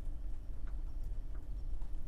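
Classroom room tone: a steady low hum with a few faint clicks.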